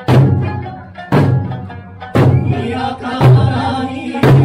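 Traditional Okinawan Eisa drumming: the large barrel drums (ōdaiko) and hand drums (paranku) struck together in unison about once a second, four strokes, each with a deep boom. Under them an Eisa folk song is sung to sanshin accompaniment.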